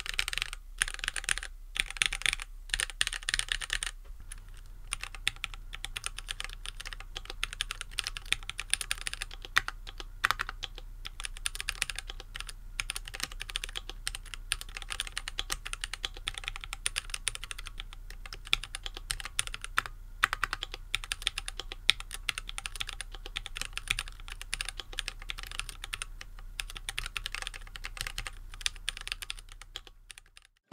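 Fast, continuous typing on a stock Keychron Q1, a gasket-mounted 75% mechanical keyboard in an aluminium case, fitted with Gateron Phantom Brown tactile switches: a dense stream of keystroke clacks that fades out near the end. The reviewer found the aluminium case's echo bothersome in this stock form.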